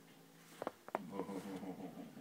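Two short clicks about a quarter second apart, followed by a low, voice-like pitched sound in a small room.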